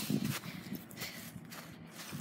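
Faint rustling and scuffing of dry, dormant lawn grass and clothing as someone shifts on the ground, with a few soft knocks from the phone being handled close to the grass.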